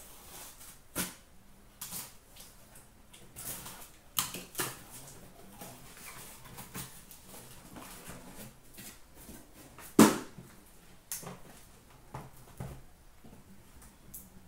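A cardboard shipping case being opened by hand and the boxes of trading cards inside lifted out and set down. Scattered rustles, scrapes and knocks of cardboard, with one sharp knock about ten seconds in, the loudest.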